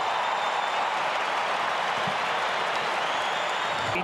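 Large football stadium crowd cheering and applauding a goal just kicked, as an even, sustained wash of noise.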